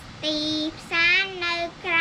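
A young girl reading a Khmer text aloud in a slow, chanting voice, each syllable drawn out on a level pitch.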